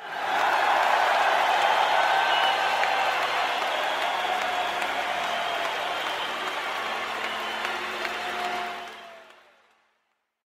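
A crowd applauding, with a few faint cheers or whistles in it. The clapping is steady, then fades out near the end.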